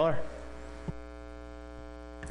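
Steady electrical mains hum with several overtones from the meeting room's microphone and sound system, with a single click about a second in.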